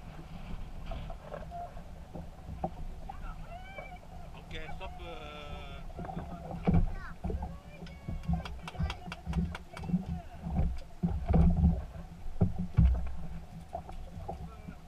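Handling noise on a small fishing boat: knocks and heavy thumps, with a run of rapid sharp clicks as a small fish is swung aboard on a line. Voices call out in the middle.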